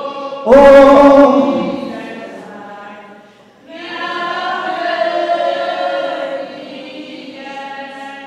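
A woman singing a worship chant into a handheld microphone in long held notes. A loud note starts about half a second in and fades over the next three seconds. After a brief dip comes another long sustained phrase that tails off near the end.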